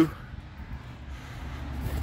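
Low, steady outdoor background rumble with no distinct event.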